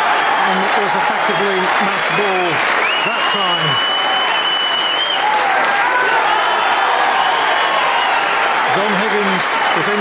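Snooker arena audience applauding loudly and steadily, with individual spectators shouting over the clapping. One long whistle is held from about three seconds in to about five seconds in.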